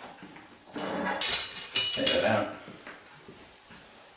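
Steel lever and chain of an AGA hotplate lifting kit clinking and scraping as they are unhooked and taken off, two short metallic bursts with a brief ringing tone about a second apart.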